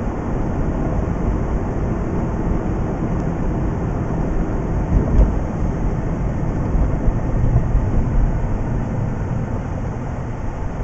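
Mazda RX-8 cabin noise while driving: a steady rumble of tyres, road and the rotary engine heard from inside the car, with a couple of low thumps about halfway through.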